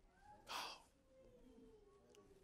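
Near silence in a pause in the sermon, broken about half a second in by one short, sharp intake of breath, with a faint held tone slowly falling near the end.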